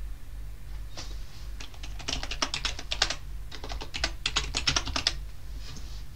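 Computer keyboard typing: two quick runs of keystrokes with a short pause between, as an IP address is entered.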